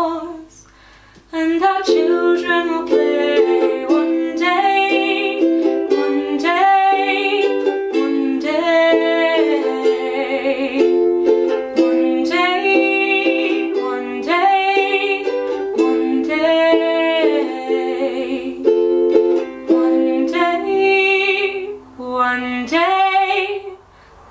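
Ukulele playing, with a woman's voice singing a wordless melody over it. The music pauses briefly about a second in, then runs on.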